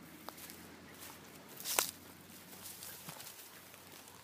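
Quiet outdoor background with faint footsteps in dry scrub and a single sharp click or snap a little under two seconds in.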